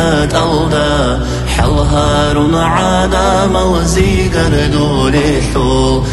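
A solo voice singing a slow, melismatic religious chant in Avar, its pitch gliding and wavering from note to note over a steady low drone.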